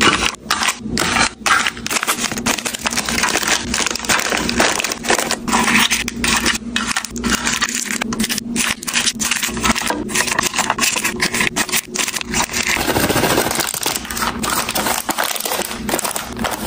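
Plastic-wrapped snack packets crinkling and clicking as they are set one after another into clear plastic drawer organizer bins: a dense run of small taps, rustles and scrapes.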